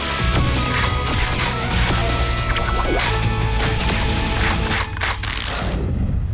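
Animated-cartoon sound effects of a robot weapon transforming: rapid metallic clicks and mechanical clanks over action music, with thin high whines.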